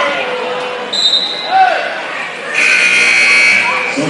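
Basketball gym: crowd voices and the ball bouncing on the hardwood, with a short shrill referee's whistle about a second in, then a louder, longer whistle blast near the end as the official stops play.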